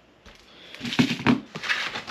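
Handling sounds as a clear plastic food container of peeled hard-boiled eggs is set into and moved across a wooden table: a run of soft knocks and rustles.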